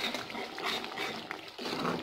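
Onion-tomato masala sizzling in oil in a metal pan as a metal spoon stirs and scrapes it, the masala being fried down.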